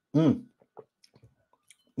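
A short wordless vocal sound from a man near the start, followed by a few faint, scattered small clicks.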